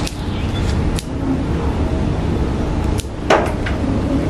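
Pruning scissors snipping shoots off a Sancang (Premna) bonsai: two sharp cuts, a lighter one about a second in and a louder one just past three seconds, over a steady low background rumble.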